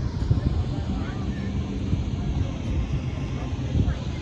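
Wind buffeting the phone's microphone as a steady, uneven low rumble, with faint voices of people nearby.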